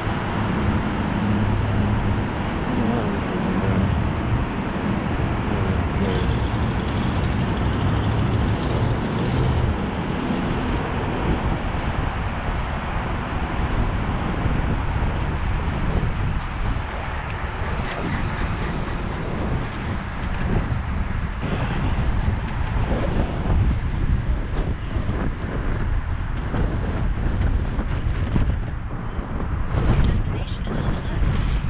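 Steady rush of wind buffeting a bicycle-mounted action camera's microphone while riding along a city street, mixed with road traffic. A low vehicle hum runs under it for the first ten seconds or so.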